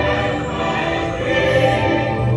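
Choral music from a dark ride's soundtrack, a choir holding long sustained notes over accompaniment.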